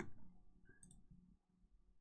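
Near silence: room tone, with a soft sound fading out at the start and a faint short click about a second in.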